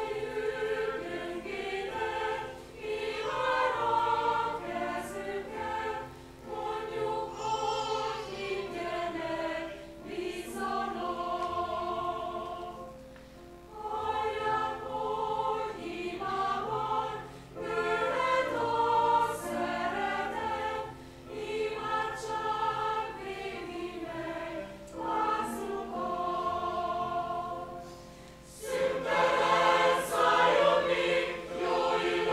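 Mixed church choir singing a hymn under a conductor, in phrases with short breaks between them.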